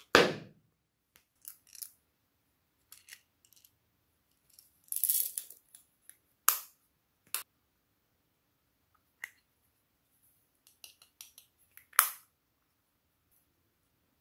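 Hard plastic cases and small toy containers being handled: scattered clicks and clacks with quiet between them, a loud clack right at the start and another about twelve seconds in, and a brief rustle about five seconds in.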